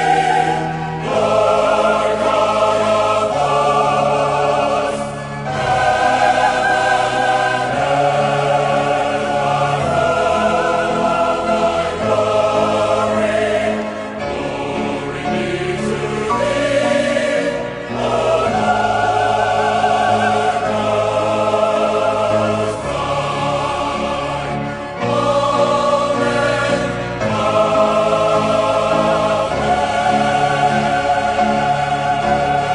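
Church choir singing, long held chords that change every second or two.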